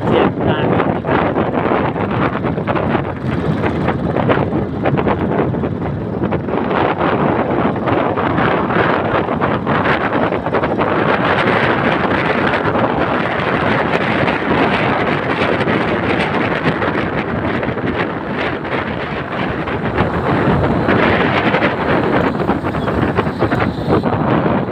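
Wind buffeting the microphone on a moving motorcycle at about 30 km/h: a loud, steady rushing roar with constant flutter, the bike's engine and road noise blended underneath.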